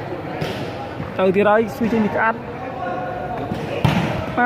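One sharp smack of a hand striking a volleyball near the end, with men's voices calling out around it in a large hall.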